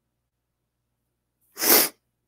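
Silence, then near the end one short, sharp, hissy burst of breath from a man, lasting under half a second.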